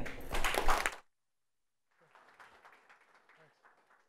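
Audience applauding, which cuts off abruptly about a second in. After that comes near silence with only faint scattered room sound.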